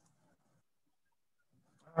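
Near silence: the pause in a video call, with a man's voice starting to speak right at the end.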